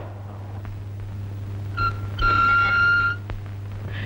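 A short, high-pitched whistle-like tone: a brief blip just under two seconds in, then a steady note held for about a second, over a low steady hum.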